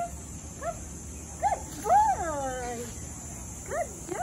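Pomeranian yipping in short high calls that rise and fall in pitch, with a longer whine falling in pitch about two seconds in, the loudest sound.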